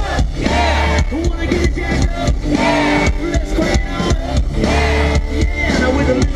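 Live country-rock band playing loud through a stage PA, heard from within the audience, with a steady drum beat throughout.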